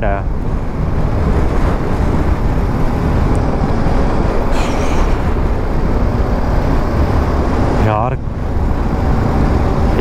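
Steady wind rush on the microphone of a moving BMW G310 GS motorcycle, with the bike's single-cylinder engine and road noise underneath.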